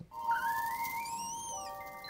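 Soundtrack music from the animated episode: held steady notes with a whistle-like sliding tone that rises and then falls over them, and more held notes joining near the end.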